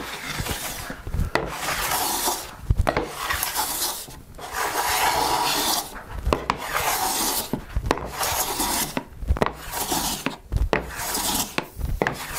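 Bailey-pattern hand plane taking light shavings off a figured white oak board: a series of smooth shearing swishes, each about a second long, with short knocks between them as the plane is set back for the next stroke. The freshly tuned plane (very sharp iron, chip breaker set close, tight mouth) slides through cleanly, even against the grain in the crotch figure.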